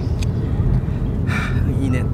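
Steady low rumble of a taxi heard from inside its cabin.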